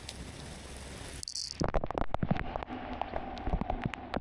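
Pop-up lawn sprinkler spray head running: water spraying with a steady hiss, turning about a second and a half in to an irregular patter of drops.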